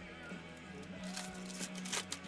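Foil wrapper of a baseball card pack crinkling as it is torn open by hand, over quiet background music with steady held notes.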